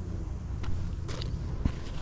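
Handling noise close to the microphone: a plush toy and a cap being squeezed and turned over in the hands, giving a few soft rustles and taps over a low steady rumble.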